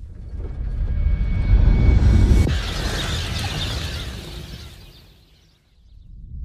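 Film sound effect of a comet fragment's impact arriving: a deep rumble swells, then about two and a half seconds in a sudden harsh crash joins it, and the whole sound dies away near the end.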